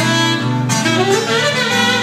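Saxophone playing a solo melody line that moves and slides between notes, over a steady low band accompaniment.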